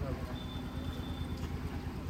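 Car engine idling steadily, with a faint high steady tone for about a second.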